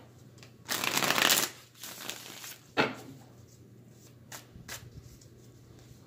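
A tarot deck being shuffled by hand: a long rustle of cards about a second in and a shorter one just after, then a sharp snap of the cards and a couple of faint ticks.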